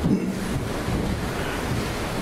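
Steady rushing background noise with a low rumble.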